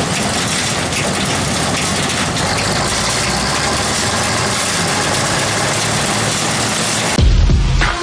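Bizon combine harvester's engine running steadily, with music lying under it; the engine sound cuts off abruptly about seven seconds in, leaving music with a steady beat.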